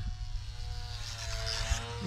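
Thin, distant whine of the HobbyZone UMX Sport Cub S's small geared electric motor and propeller, its pitch dipping slightly and coming back up, over wind rumble on the microphone. The pilot says the low-voltage cutoff has been throttling the motor as the battery runs low.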